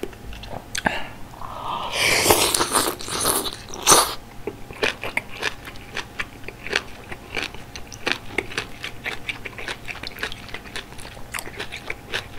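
Close-miked eating of malatang noodles and bean sprouts: a loud slurp lasting a couple of seconds, starting about a second in, then steady chewing with many crisp crunching clicks.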